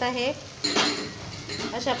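A single sharp, ringing clink of dishware against the kadai as ground turmeric is tipped in from a small bowl.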